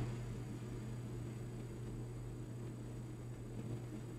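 Faint steady low hum over light hiss: the background noise of the call's audio line with no one talking.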